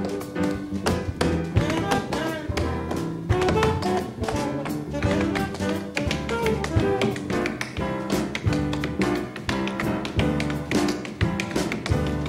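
Tap shoes striking a wooden stage floor in rapid, dense rhythms, played live over a jazz band with piano, bass and drums.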